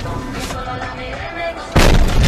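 Background talk and music, then near the end a sudden loud crash of noise that goes on: a car collision picked up by the dashcam's microphone.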